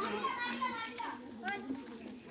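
Crowd of children talking and calling out over one another, an overlapping babble of young voices.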